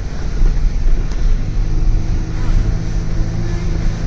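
Car engine running and tyres rumbling over a rough dirt track, heard from inside the cabin; a steadier engine hum sets in about a second and a half in.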